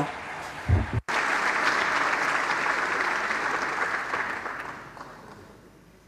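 Audience applauding, starting about a second in and dying away about five seconds in.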